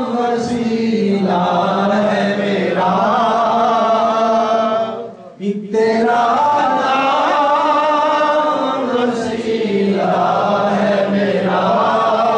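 Men's voices chanting together in unison, a devotional chant sung in long, drawn-out phrases with a brief break for breath about five seconds in.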